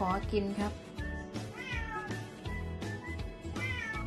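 Domestic cat meowing several times in drawn-out, rising-and-falling calls, begging for food.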